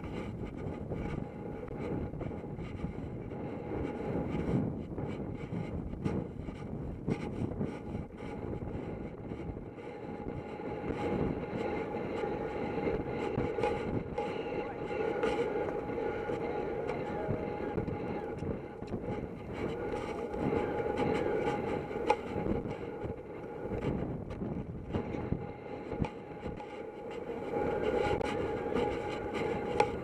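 Wind rushing and rumbling over a helmet-mounted camera's microphone while a horse gallops across grass, with the thud of hoofbeats and the jolting of the ride.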